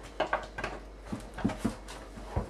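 Rinse water sloshing around inside a plastic homebrew barrel as it is swirled: a string of about six short sloshes and knocks.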